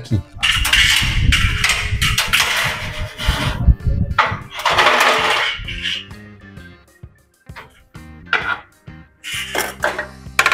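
Long, thin steel ceiling-frame bracket, about twelve feet long, rattling and scraping loudly as it is handled and lifted up against the ceiling, for about six seconds, then quieter handling noise. Background music runs underneath.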